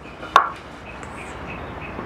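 A single sharp knock about a third of a second in, as pieces of 2x4 lumber are handled and knocked together.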